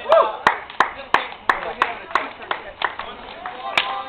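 Hands clapping in an even rhythm, about three claps a second, with men's voices under it; near the end a single sharp slap of a high five.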